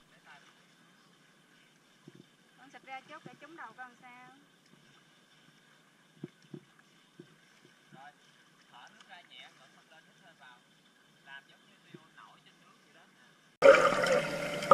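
Near-quiet pool water with faint, distant voices around three to four seconds in and a faint steady high tone throughout. Near the end a sudden loud rush of water and bubbles begins as the sound switches to underwater.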